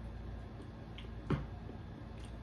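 A man eating a mouthful of food: quiet chewing, with a faint click and then one sharp mouth smack about a second and a half in.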